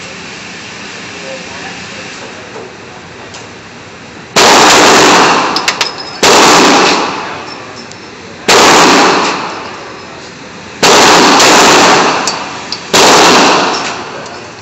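Five handgun shots fired at roughly two-second intervals, each a sharp crack with a long echoing decay in the indoor range. The first comes a little over four seconds in.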